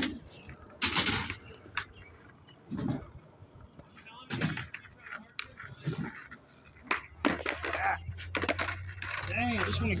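Skateboard wheels rolling on concrete with a steady rumble that comes up close and grows louder over the last few seconds. Scattered sharp clacks of boards hitting the concrete sound throughout.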